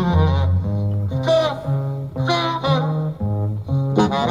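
A jazz recording playing loudly: a bass line stepping through notes about twice a second under a lead melody with bending notes.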